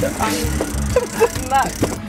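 Several people talking in short, indistinct snatches over a low rumble, with background music.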